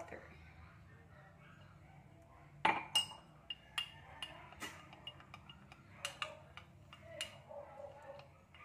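A metal spoon stirring cocoa powder and water in a glass tumbler, clinking against the glass again and again at an uneven pace. It starts about two and a half seconds in with one sharp clink.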